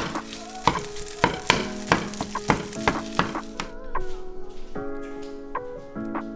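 Food frying in oil in a nonstick pan, a steady sizzle that stops about halfway through. Background music with chords and a steady beat plays throughout.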